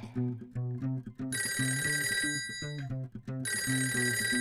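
Telephone ringing twice, each ring about a second long with a pause between, over bouncy children's song backing music with a plucked bass line.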